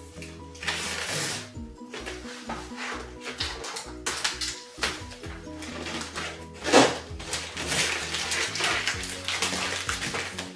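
Packing tape being pulled off the roll in several short, noisy strips and pressed along the edge of a cardboard box, the loudest pull a little before seven seconds, over background music.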